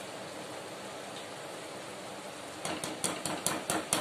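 A steady low hiss, then, a little over two and a half seconds in, a quick run of about eight sharp metal clinks as a metal spoon knocks against the side of a metal kadai while stirring the curry.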